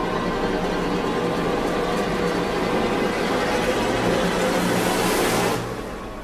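A rushing, rumbling noise under dark background music. The noise swells over the last few seconds and cuts off suddenly shortly before the end.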